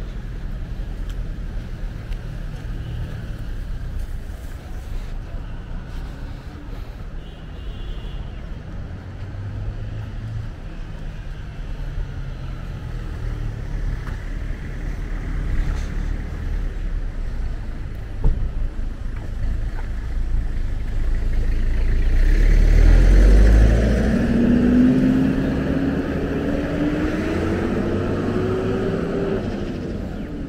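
Road traffic going by, a steady low rumble. About two-thirds of the way through, a louder vehicle passes close by, its engine note rising as it accelerates.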